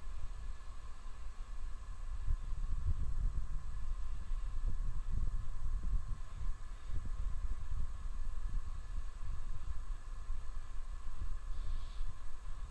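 Launch-pad ambience at the Falcon 9 pad during the final countdown: a low, gusty rumble with faint steady high tones above it.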